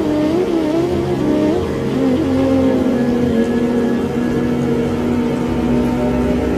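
Slow flute melody over a sustained drone. The wavering, ornamented line settles into one long held low note about two seconds in, with a low rushing noise underneath.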